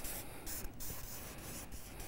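Marker pen writing on flip-chart paper: a quick run of short, scratchy strokes of the felt tip rubbing across the paper.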